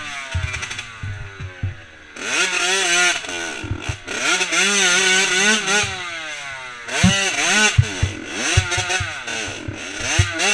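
Off-road motorcycle engine revving hard and easing off again and again, its pitch climbing and falling with the throttle, with a lull in the first couple of seconds and fresh bursts about two and seven seconds in. Sharp knocks come through several times, most of them in the last few seconds.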